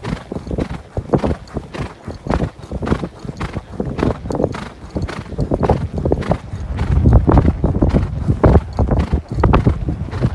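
A horse's hoofbeats heard from the saddle as it runs at speed along a soft, heavy sand track, a quick run of thuds that get louder about seven seconds in.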